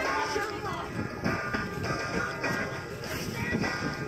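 Background music playing from a radio.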